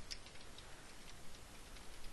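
Faint, irregular clicks of a computer keyboard being typed on.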